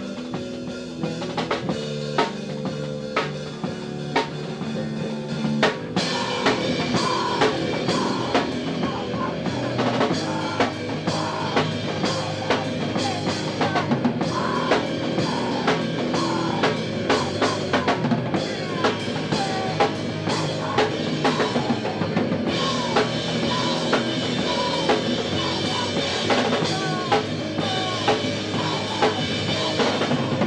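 Live rock band, electric guitar, bass guitar and drum kit, playing loud. It starts sparser, with separate drum hits over the guitar and bass, and the full band comes in about six seconds in.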